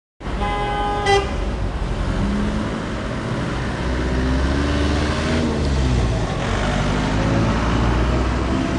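A car horn sounds in one steady honk of about a second near the start, over dense city traffic. Car engines then run and rise in pitch as cars pull through the intersection, over a constant low road rumble.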